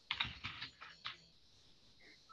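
Computer keyboard typing: a quick run of several keystrokes in the first second, faint.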